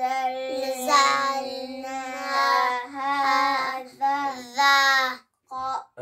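Young boys chanting Qur'an recitation together, drawing out long held notes at a steady pitch, with short breaths between phrases and a brief pause near the end.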